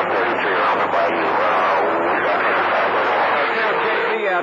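Garbled, hard-to-follow voice on a CB radio receiving a distant skip transmission on channel 28, heard through the radio's speaker with steady static hiss under it.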